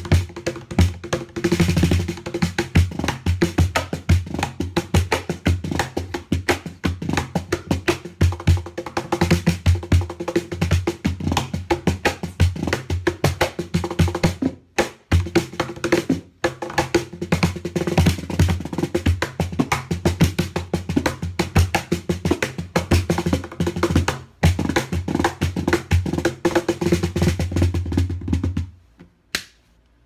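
Meinl cajon played by hand in a fast, busy groove of deep bass strokes and sharper slaps on its wooden front plate. It breaks off briefly a few times and stops shortly before the end.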